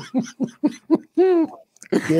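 A man laughing heartily: a quick run of short pitched bursts, then a longer hooting laugh that rises and falls about a second in.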